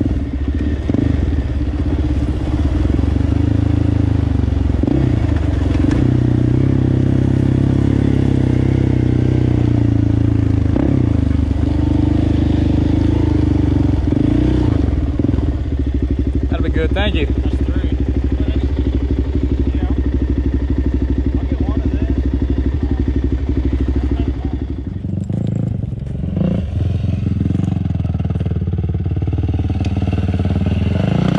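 Sport ATV engine running steadily for most of the time. Near the end it drops briefly, then revs up again with rising pitch.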